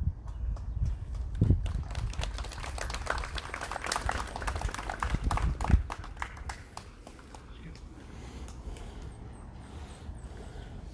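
A crowd applauding. Scattered clapping thickens a second or two in, then thins out and dies away about six seconds in.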